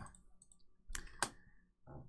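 Two sharp computer-mouse clicks about a third of a second apart, about a second in, against quiet room tone.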